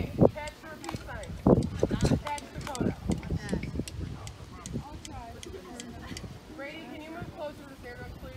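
Unclear talking and murmuring from people near the microphone, with a few sharp clicks and a low wind rumble on the microphone. No band music is playing.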